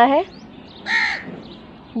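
A single short, harsh bird call about a second in, falling slightly in pitch.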